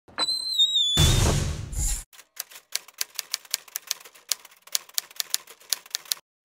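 Typewriter sound effect: a rapid, uneven run of sharp key clacks, about six a second, starting about two seconds in. Before it comes a brief wavering high tone, then a loud noisy rush lasting about a second.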